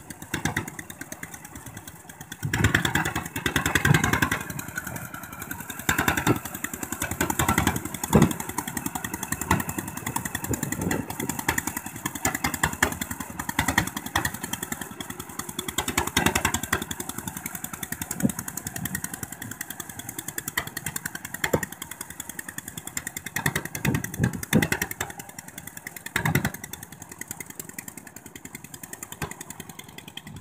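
Two-wheel walk-behind tractor's single-cylinder diesel engine running under load as it plows through flooded paddy mud: a rapid, steady chugging that swells louder several times and eases back.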